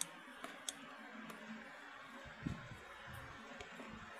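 Small three-blade homemade ceiling fan running faintly at its third speed setting, with a few light clicks and a soft low thump about halfway through.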